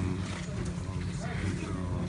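A pause in a man's speech: faint background voices and outdoor noise over a steady low hum.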